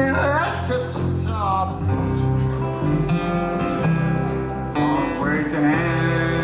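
A folk song played live: strummed acoustic guitar under a man's singing voice.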